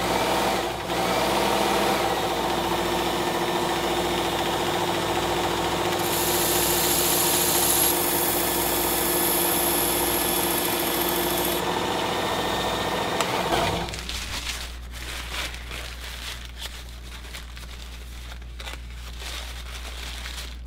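Work Sharp Ken Onion Elite electric belt sharpener running steadily. Between about six and eleven seconds in a hiss is added as a chef's knife edge is honed on the compound-loaded cloth belt. The motor stops about thirteen seconds in, followed by faint rustling and handling.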